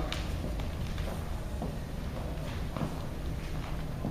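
Dancers' shoes stepping and pivoting on a hardwood floor: irregular sharp taps and scuffs of high heels and leather soles over a steady low room hum.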